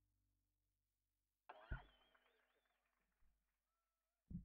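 Near silence after a song ends, broken about a second and a half in by a brief, faint, high warbling sound and a click.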